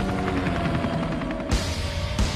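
Helicopter rotor chopping, mixed with dramatic background music that holds a steady note; the soundtrack cuts abruptly about one and a half seconds in.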